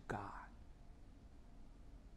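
A man's voice ends a phrase with one soft, breathy word in the first half-second. After that there is only faint room tone.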